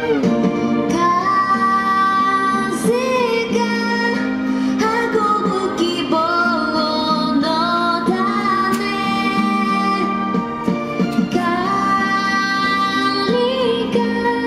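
A woman singing a pop song into a handheld microphone over instrumental accompaniment, holding long notes with vibrato.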